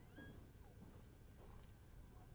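Near silence: faint outdoor background with a brief, faint rising chirp about a quarter second in.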